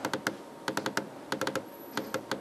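Computer keyboard keys pressed in quick runs of three or four sharp clicks.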